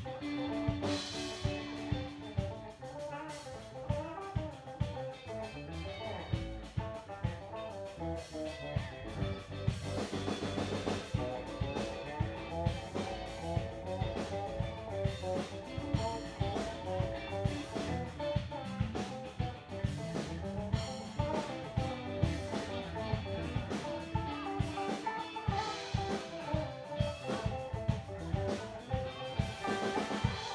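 Live electric guitar and Pearl drum kit playing an instrumental rock passage, with a steady drum beat under shifting guitar notes.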